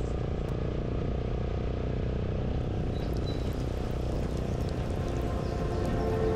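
Romet Division 125's 125 cc single-cylinder engine running steadily at a light cruising speed, heard from the rider's seat together with a steady rush of wind and road noise.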